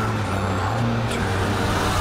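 Loud, dense vehicle rumble with a steady low engine hum, part of a film's sound effects, cutting off sharply at the end.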